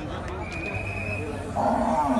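Background crowd voices at a livestock pen, with a loud, high animal call from the livestock breaking in near the end.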